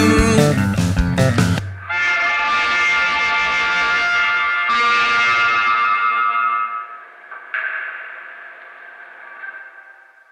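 A rock song ending: the full band stops about a second and a half in, leaving a distorted electric guitar chord ringing out and slowly fading. The guitar is struck again twice more, quieter each time, and dies away near the end.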